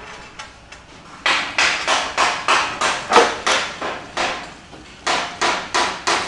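Repeated sharp knocks of a tool tapping ceramic floor tiles as they are set, about three a second, with a short break a little before the end.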